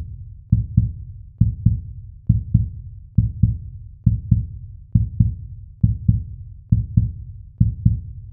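Heartbeat sound effect: low double thumps in a steady lub-dub rhythm, a little faster than once a second.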